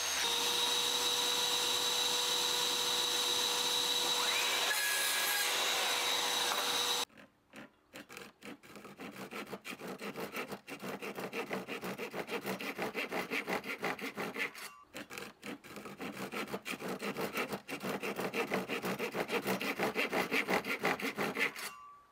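A mitre saw runs with its dust extractor for about seven seconds, a steady loud whine, while cutting a threshold strip to length. Then a Japanese-style pull saw cuts notches into the wooden strip by hand, with quick even strokes at about three a second.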